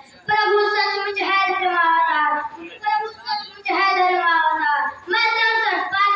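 A child singing a slow, drawn-out melody into a handheld microphone, the voice amplified, in long held phrases with brief breaths between them.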